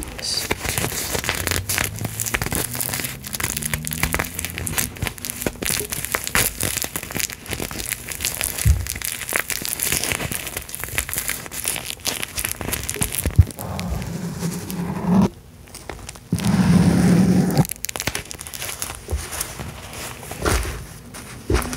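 Crinkling of a Beanie Baby angel bear's iridescent metallic-fabric wings as they are squeezed and rubbed in the hand close to the microphone, a dense run of fine crackles. About three-quarters of the way through there is a brief, louder low rubbing sound.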